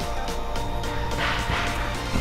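Electronic background music track playing steadily, with a rushing noise that swells about a second in.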